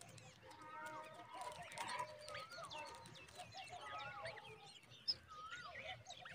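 Several birds calling: repeated short rising-and-falling whistles, chirps and high ticks, overlapping throughout.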